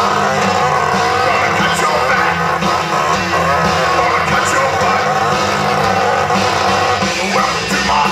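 Rock band playing a loud song: drums, electric guitar and a man singing into a microphone.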